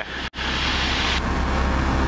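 Cessna 172P's engine and propeller droning steadily, heard inside the cabin in flight. A brief drop-out comes about a third of a second in.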